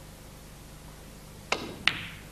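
Snooker shot: the cue tip strikes the cue ball with a sharp click about one and a half seconds in, and about a third of a second later the cue ball clicks into the pink, a crisp ball-on-ball knock with a brief ring.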